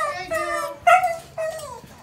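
A dog whining and yowling in several high, drawn-out cries, the last one falling in pitch.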